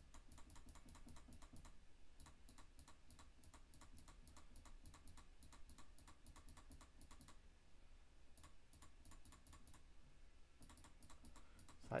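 Faint, rapid runs of small plastic clicks from a computer mouse, several a second, broken by short pauses.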